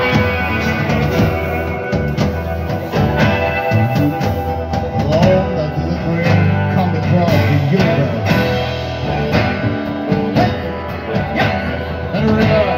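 Live rock band playing an instrumental passage with no singing: acoustic and electric guitars over bass guitar and a steady drum beat.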